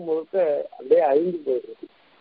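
Only speech: a man giving a religious discourse in Tamil, speaking in short phrases with brief pauses.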